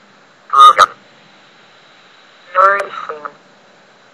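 Synthetic text-to-speech voice reading dictionary words aloud one at a time: two short utterances with pauses between them, over a faint steady hiss.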